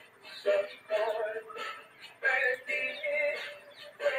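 A song with a sung vocal: held notes in short phrases that break off and start again.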